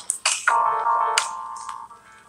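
A short musical sting: a held chord of electronic tones that fades away over about a second and a half, with a single click about a second in.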